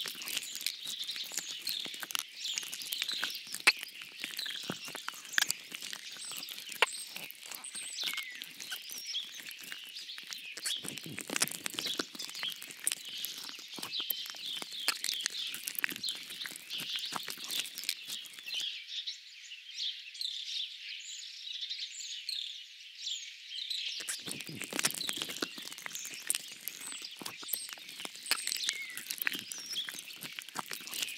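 A dense chorus of small songbirds chirping and twittering without a break, over a light crackle of small clicks. For about five seconds past the middle, the lower crackle drops away and only the high chirps remain.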